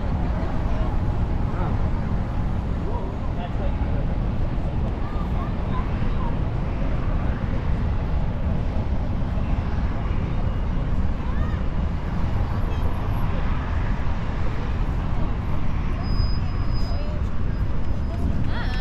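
Outdoor street ambience: a steady low rumble with faint voices of passersby talking.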